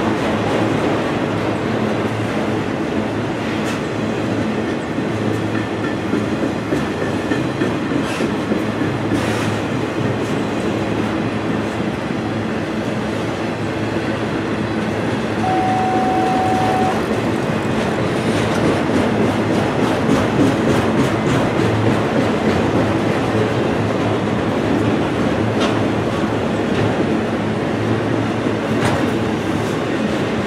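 Freight train of autorack cars passing close by: a steady rumble of steel wheels on rail with the clickety-clack of wheels over rail joints. A brief steady tone sounds for about a second and a half about halfway through.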